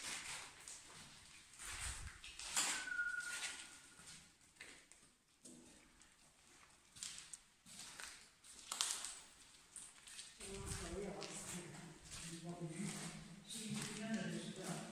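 Footsteps on the tunnel floor, about one step a second, with low voices joining in the last few seconds.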